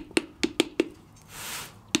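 Wooden paddle slapping the wet clay wall of a coil-built pot against a hand held inside as the anvil, thinning and welding the newly added coils: four quick strikes in the first second, another near the end, with a brief soft hiss in between.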